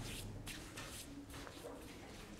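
Faint rustling and shuffling of paper in a quiet room, with a few soft, brief scrapes.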